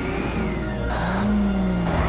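Heavy vehicle engine revving over a low rumble: about a second in its pitch rises, then falls away.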